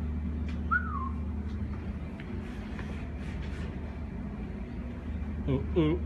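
Steady low mechanical hum, with one short whistle-like chirp falling in pitch about a second in.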